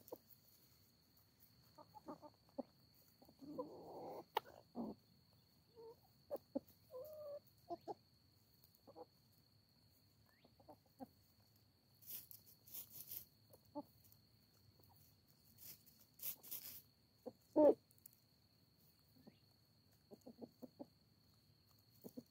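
Backyard hens clucking softly in short, scattered calls while foraging, with one louder call about three-quarters of the way through. Two brief bursts of hissy rustling come around the middle, and a faint steady high whine runs underneath.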